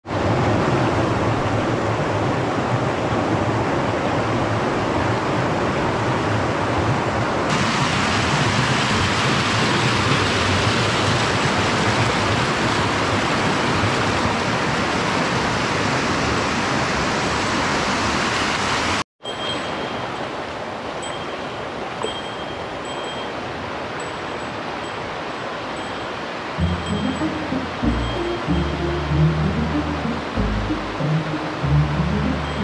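Mountain stream water rushing over rocks, a loud steady rush. After a short break about two-thirds in it is quieter, with faint high chiming notes, and background music with low notes comes in near the end.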